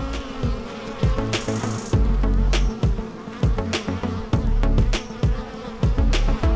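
Honey bees buzzing close to the microphone at a hive entrance: a steady, pitched hum. Underneath come repeated low thuds and stretches of low rumble.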